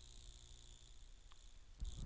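Near silence: faint room tone with a low steady hum, and soft low rustling or handling noise near the end.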